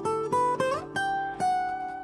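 Fingerpicked acoustic guitar in drop D tuning: a quick run of rising plucked notes with a slide up, then long ringing high notes from about a second in.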